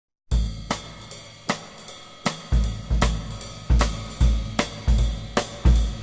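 Drum kit playing the opening beat of a swing recording, starting a moment in: snare and cymbal strokes over bass-drum thuds, several hits a second.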